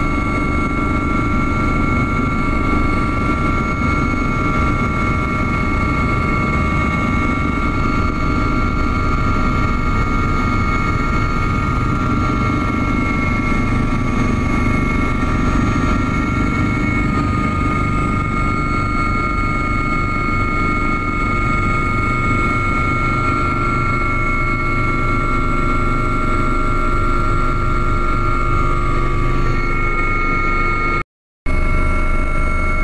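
Helicopter cabin noise in flight: a loud, steady engine and rotor noise with a constant high-pitched whine layered over it.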